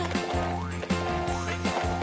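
Upbeat children's song backing music, an instrumental stretch between sung lines, with a steady bass line and drum beat.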